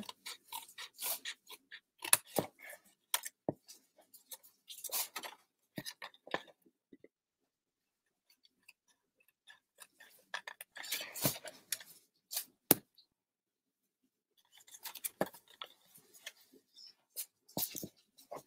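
Small scissors snipping short slits into scored cardstock: clusters of sharp snips and clicks, with a pause in the middle.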